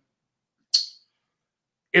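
Silence broken once, about three-quarters of a second in, by a brief breathy hiss from a person, with no voiced sound in it.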